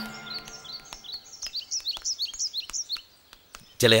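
Small birds chirping in quick, short, falling calls, several a second, with a few sharp ticks among them. The chirping stops just under three seconds in. A background music note fades out during the first second or so.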